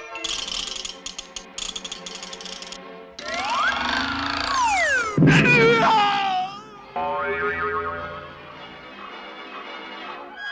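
Cartoon score with comic sound effects: fast fluttering music for the first three seconds, then sliding tones rising and falling. A loud hit comes about five seconds in, followed by a wavering yowl from the cartoon cat, and the music picks up again near the end.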